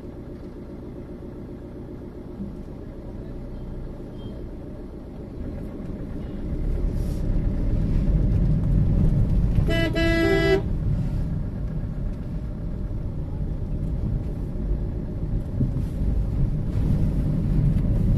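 A vehicle's engine idles with a low steady hum, then the vehicle moves off and the rumble of engine and road grows louder about six seconds in. A horn sounds once, briefly, about ten seconds in.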